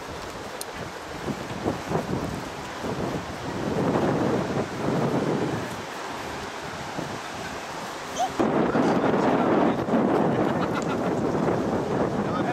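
Wind buffeting the camcorder microphone in gusts, loudest from about four to five and a half seconds in and again from about eight seconds on.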